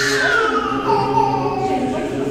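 Church chanting: voices singing a slow, sustained chant, with one high voice gliding downward through the first half.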